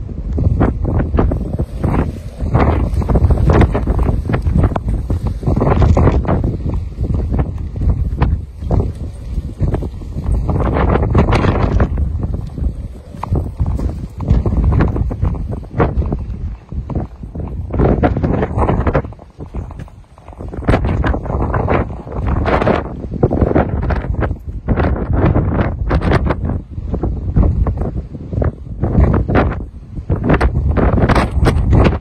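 Storm-force wind gusting over the microphone: loud, rumbling buffeting that swells and eases from gust to gust, with a brief lull about two-thirds of the way through.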